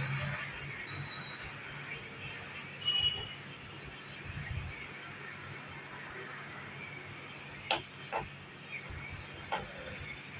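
Hot air rework gun blowing a steady hiss of hot air onto a laptop motherboard component to melt its solder, with a low hum underneath. A few light metallic ticks of the tweezers come near the end.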